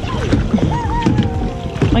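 Kayak paddles dipping and splashing in the water, over background music.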